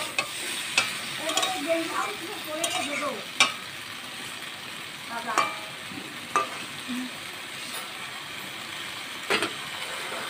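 Ridge gourd and potato pieces sizzling in oil in a karai while a metal spatula stirs them, scraping and clinking against the pan about eight times. The vegetables are being sautéed down in spices.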